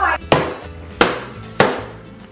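A stick whacking a hanging paper piñata three times, about two-thirds of a second apart, each a sharp hit. Background music plays underneath.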